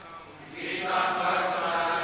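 A group of voices chanting together in unison, coming in loudly about half a second in over a quieter single voice.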